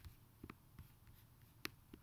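Near silence in a small room, broken by a few sharp computer mouse clicks, the loudest about a second and a half in.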